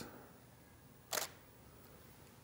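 Camera shutter firing once: a single short click about a second in, over faint room tone.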